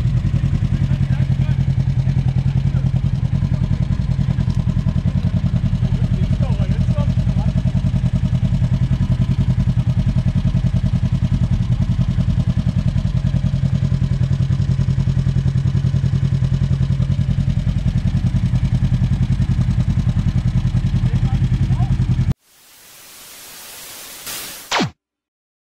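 Polaris RZR 1000 side-by-side's engine idling steadily. About 22 seconds in it cuts off abruptly and a rising hiss of static takes over.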